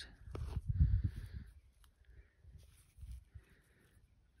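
Faint handling noise: low rumbling bumps on the microphone, strongest in the first second and a half, with light rubbing as a thumb works soil off a small corroded metal ring held in the hand.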